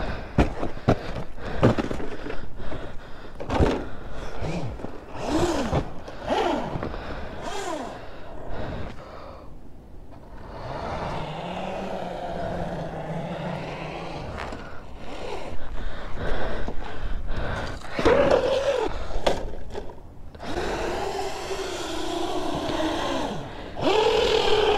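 Crunching footsteps in deep snow in the first few seconds. Then a Traxxas Slash 4x4 RC truck's electric motor whines in rising and falling bursts as the throttle is worked, settling into steadier runs in the middle and again near the end.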